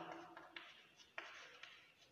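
Chalk scratching and tapping faintly on a blackboard as a word is written by hand, with a sharper tap about a second in.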